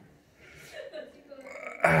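Speech only: faint voices in a small room, then a man's voice starts loudly near the end.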